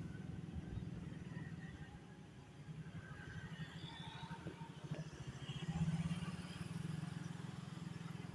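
Steady low rumble of a vehicle's engine and road noise while moving through street traffic, with other cars and motorcycles going by.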